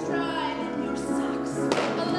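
Singing from a live stage duet with accompaniment, the pitched voices held and gliding over sustained chords. A single sharp thump cuts through about two-thirds of the way in.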